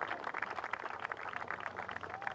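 Spectators clapping around a golf green: a steady patter of many hands applauding at moderate level.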